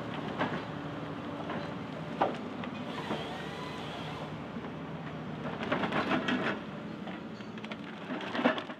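An engine running steadily at a low pitch, with scattered sharp knocks and clicks, a cluster of them around six seconds in.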